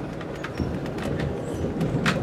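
Amtrak Coast Starlight passenger car rolling along, heard from inside the car: a steady low running rumble with a few faint clicks.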